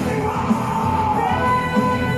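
A woman singing a long belted note into a microphone over a live rock band with drums and bass. Her note slides down in pitch about a second in, then she holds a new note.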